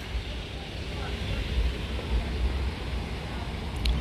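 Steady traffic noise from a stalled line of trucks and cars: a low rumble under an even hiss.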